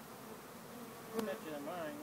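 Honeybee swarm buzzing, a faint hum that wavers in pitch and grows clearer in the second half, with a single light click about a second in.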